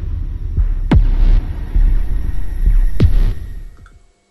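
Electronic intro sting of deep bass hits, two in all, each starting with a quick falling sweep and leaving a low pulsing rumble between them, fading out near the end.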